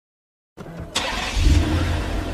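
Rumbling noise effect at the opening of a sped-up hip-hop track. It starts abruptly about half a second in, with a deep rumble and a hiss over it.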